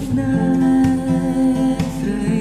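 Khmer pop ballad: a singer holds one long note over a steady beat and a soft guitar backing.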